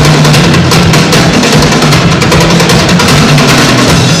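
Live percussion music: a drum kit with cymbals played loud in dense, rapid strokes over a held low note.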